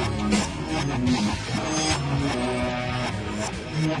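Hard rock song playing: a full band, with guitar prominent.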